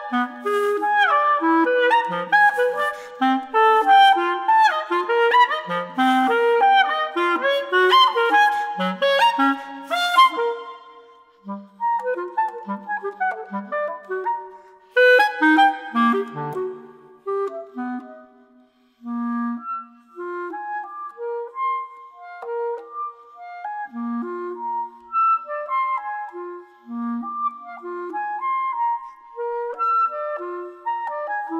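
A clarinet playing one note at a time: a fast, busy run of notes for about the first third, then slower, quieter notes spaced further apart, with a brief pause a little past the middle.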